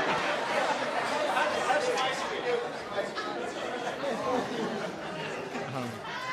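Indistinct chatter of many voices talking at once, echoing in a large hall.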